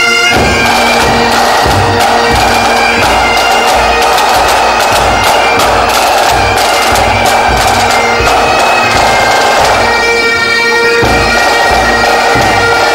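Pipe band playing a march: bagpipes carry the tune over their steady drones, with a bass drum and snare drums beating time.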